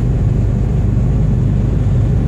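Truck's diesel engine and road noise heard from inside the cab while driving, a steady low drone.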